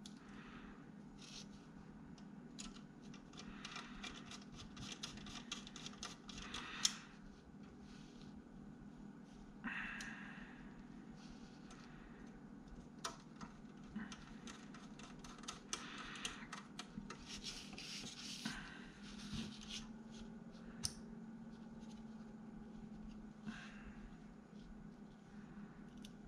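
Quiet handling of a small perforated metal enclosure piece on a desk mat: scattered light clicks and rubbing scrapes, with a sharper click about seven seconds in.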